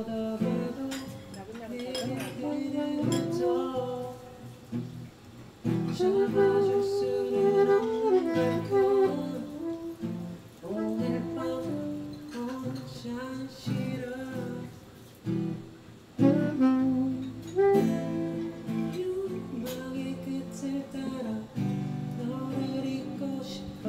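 Saxophone playing a melody in phrases over acoustic guitar accompaniment, in an unplugged acoustic arrangement of a song.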